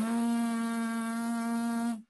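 A brass player's lips buzzing on one steady, held pitch for about two seconds, cutting off at the end. It shows the embouchure at work: the lips vibrate only when breath drives them.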